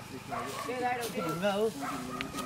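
People talking indistinctly, their words not made out.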